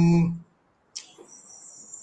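A man's drawn-out hesitation "um" at one steady pitch, cut off abruptly about half a second in. After a short silence, a faint steady high-pitched whine follows.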